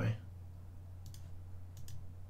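Computer mouse clicking a few times, once about a second in and twice in quick succession near the end, over a faint steady low hum.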